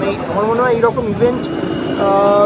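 A man talking, over a steady outdoor background hum.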